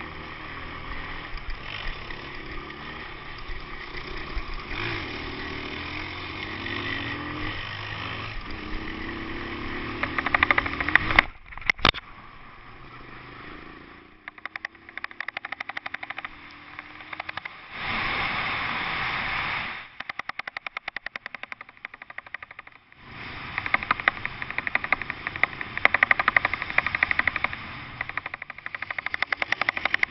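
Trail motorcycle engine running along a dirt track, heard through a bike-mounted action camera, with rapid rattling clicks and pulses from about ten seconds in. The sound drops out and jumps in level several times.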